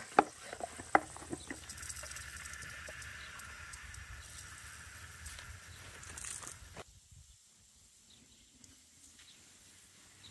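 Hand-pump garden sprayer: a few sharp clicks from the pump handle in the first second or so, then the spray wand hissing steadily, cutting off suddenly about seven seconds in.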